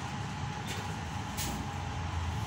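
Steady low rumble of background noise, with a couple of faint handling knocks as a computer monitor is set down and a desktop tower case is picked up.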